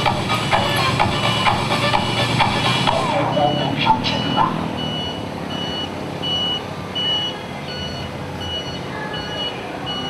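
Dance music from the procession vehicles' loudspeakers plays and fades back after about three seconds. A vehicle's reversing alarm then beeps steadily, about one high beep every three-quarters of a second.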